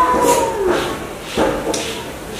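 A held, slowly falling tone fading out about half a second in, then a single knock about one and a half seconds in.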